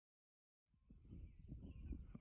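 Dead silence, then about two-thirds of a second in, outdoor field ambience starts: a low rumble of wind on the microphone with soft, irregular low knocks and faint bird chirps.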